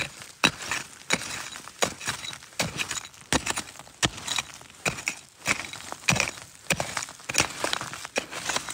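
A geologist's rock pick striking and scraping loose sandstone rubble, with repeated irregular clinking strikes at about two a second as stones and gravel are knocked loose.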